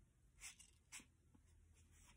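Near silence, with two faint, brief rustles about half a second and one second in.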